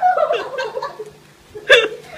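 A person laughing: a long high laugh that falls in pitch and trails off, then after a short pause a sharp burst of laughter near the end.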